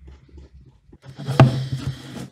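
Rustling and handling of insulated hook-up wires at a screw-terminal block, starting about a second in, with one sharp click about a second and a half in.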